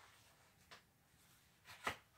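Near silence: quiet room tone, with a faint tick about two-thirds of a second in and a short soft noise just before the end.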